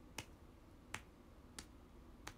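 Three short sharp clicks, about two-thirds of a second apart, over faint room tone.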